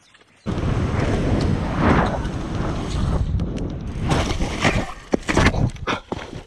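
Wind rumbling over an action camera's microphone as a mountain bike runs down a dirt trail, with the bike rattling. Near the end come several hard knocks as the rider crashes and the camera ends up on the ground.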